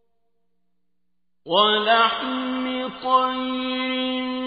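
Silence for about a second and a half, then a man's voice reciting the Quran in the drawn-out, melodic mujawwad style comes in, sliding up into its first note and settling into a long, steadily held tone.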